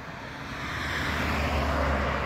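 A car approaching on the road, its tyre and engine noise growing steadily louder.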